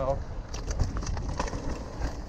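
Mountain bike rolling over a dirt trail: a steady low rumble of tyres and wind on the microphone, with scattered clicks and rattles from the bike.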